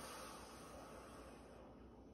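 A faint, long exhaled breath trailing off into near silence about one and a half seconds in.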